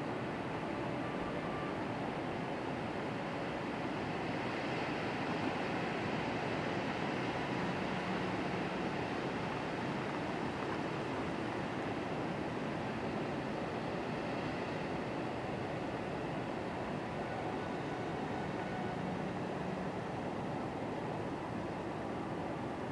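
Steady, even rush of ocean surf breaking along a sandy beach.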